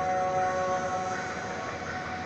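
Running injection moulding machines filling the hall with a steady hum and hiss, with a few held whining tones that fade about a second in.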